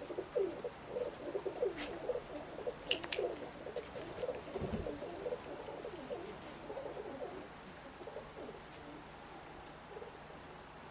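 Domestic pigeons cooing, many short overlapping coos that thin out and fade near the end.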